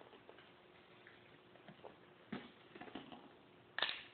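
Soft clicks and taps of a plastic snack cup of puffs being handled, with one sharper knock near the end.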